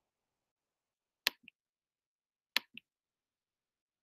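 Two computer mouse-button clicks a little over a second apart. Each is a sharp press followed about a fifth of a second later by a softer release.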